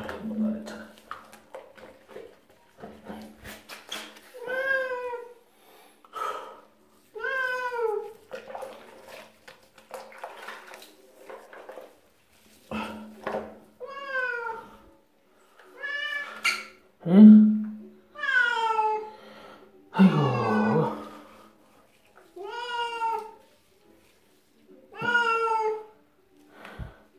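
Domestic cat meowing repeatedly while being washed in a soapy bath, about nine separate meows, each falling in pitch. The loudest call comes a little past the middle, and one near the end of the middle stretch dips lower.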